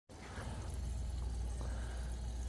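Homemade biodiesel (vegetable oil thinned with gasoline) being siphoned by a hand pump through a hose into a vehicle's fuel tank: a steady, faint rush of flowing liquid.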